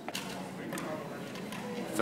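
Low, steady room noise with faint background voices.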